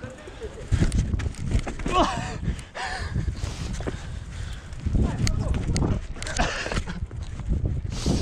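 Mountain bike rolling over interlocking paving stones: an uneven low rumble from the tyres with frequent sharp clatters from the bike, louder about a second in and again past the middle. A couple of short voices call out briefly near the two-second mark.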